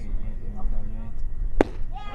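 A single sharp crack about one and a half seconds in, as the pitched baseball makes its impact at home plate.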